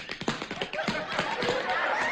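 Quick, irregular taps of shoes striking the floor in dance footwork, then a swell of studio audience applause in the second half.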